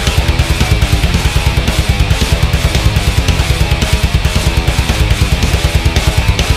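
Melodic death metal music: distorted electric guitars over a drum kit, with fast, evenly spaced drum hits that carry on without a break.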